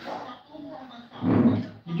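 A dog barks once, a short, loud, rough sound a little over a second in.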